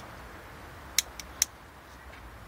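Two sharp clicks about a second in, less than half a second apart, with a fainter one between them, as a hand-held lighter is struck to ignite hydrogen from a foil-and-lye reaction. A low steady hum lies underneath.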